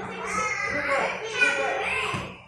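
Young children's voices, talking and calling out over one another, with a brief sharp peak about one and a half seconds in.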